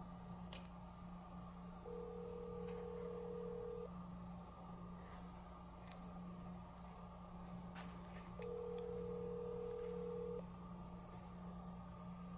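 Telephone ringback tone heard from the calling phone's speaker: two steady rings about two seconds long, the second coming some four seconds after the first ends, over a low steady hum. The call is going to a phone sealed inside a Faraday bag, which it does not reach.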